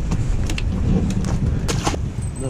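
A few sharp knocks and taps of a just-landed tautog being handled on a fiberglass boat, over a steady low rumble.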